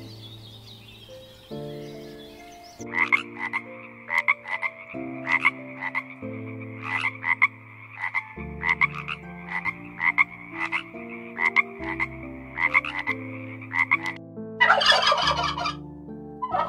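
A frog croaking in a long series of short calls, about two to three a second, over soft piano music. Near the end a turkey gobbles, louder than the croaking.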